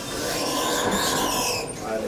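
High-speed traction elevator making a steady rushing hiss with a faint high squeal for nearly two seconds, easing off just before the end.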